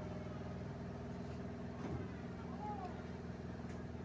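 Steady low mechanical hum of a running motor, made of several held low tones.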